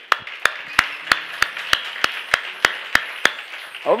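Hands clapping in a steady rhythm, about three claps a second. There are roughly a dozen sharp claps, and they stop a little before the end.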